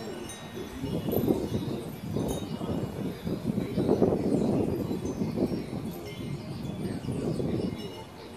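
Wind chimes tinkling in a breeze, with short scattered high notes, over a louder rushing noise that swells and fades three times.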